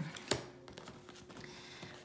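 A single sharp tap about a third of a second in as paper tarot cards are handled and set down on a cloth-covered table, followed by faint rustling of cards and hand on the cloth.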